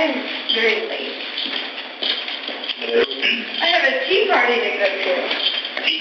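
People in conversation. The voices sound thin and muffled, with no low end and a clipped top.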